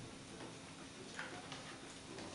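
Faint handling noises at a craft table: a few small, scattered clicks and ticks over quiet room tone.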